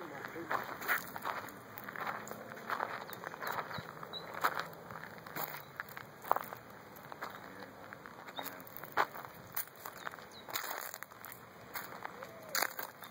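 Irregular crunching footsteps on dry leaf litter and gravel, a series of short scuffs and clicks.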